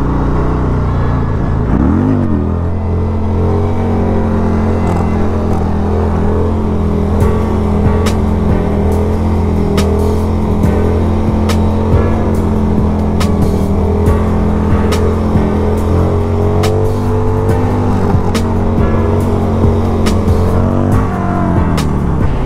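A 1994 Harley-Davidson Sportster 1200's air-cooled Evolution V-twin with an aftermarket pipe revs up about two seconds in. It is then held at steady revs through a long wheelie and drops off near the end. Sharp ticks sound now and then through the middle.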